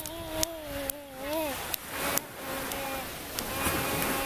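A toddler claps her small hands half a dozen times at an uneven pace while making a long wavering coo that slides up and breaks off about a second and a half in. A softer, shorter vocal sound follows near the end.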